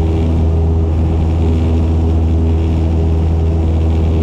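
Cessna 172's piston engine and propeller droning steadily at climb power, heard inside the cockpit as a deep, even hum with steady overtones.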